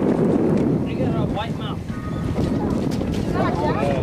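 Steady wind rush on the microphone over water noise on an open boat at sea, with brief snatches of voices.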